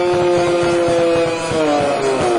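Live rock band playing: a long held distorted note that slides down in pitch about three-quarters of the way through, over the drum kit's beats.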